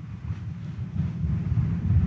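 A low, uneven rumble with little above it.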